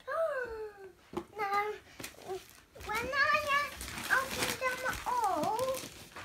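Young children's high-pitched voices, a string of short exclamations and calls with the pitch sweeping up and down. Around the middle there is a rustle of wrapping paper.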